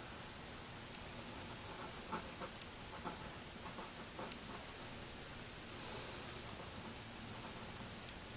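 Faint scratching of a mechanical pencil's lead on drawing paper, in clusters of short, quick strokes with brief pauses between.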